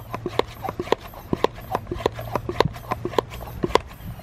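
Hand-pump pressure sprayer being pumped to build pressure in its tank, the plastic plunger clicking with each stroke, about four clicks a second. It is being worked until it gets too hard to pump.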